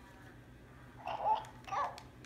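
Spin Master Penguala Hatchimal toy inside its egg giving two short, high babbling coos about a second in, after a moment of quiet.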